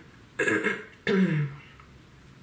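A woman clearing her throat in two quick bursts, the second ending in a short falling hum.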